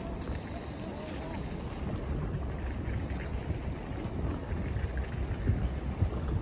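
Low, uneven rumble of wind buffeting the microphone outdoors, growing slightly louder toward the end.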